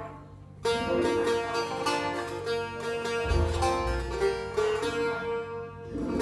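Setar, the Persian long-necked lute, played solo: about half a second in, a run of quick plucked notes starts suddenly and goes on over one steady ringing note.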